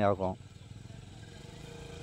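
Sport motorcycle engine running at low speed, a faint steady hum that grows slightly louder as the bike comes closer along a dirt trail.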